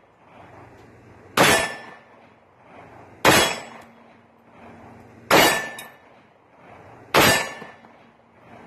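Hi-Point C9 9mm pistol firing four single shots about two seconds apart, loaded with Callaway Ballistics remanufactured 115-grain TMJ rounds. Each report is sharp with a brief echoing tail, and the pistol cycles on every shot.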